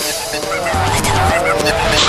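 Psytrance breakdown: the kick drum drops out, and swooping synth effects glide up and down in pitch over a hissing wash, building back up toward the end.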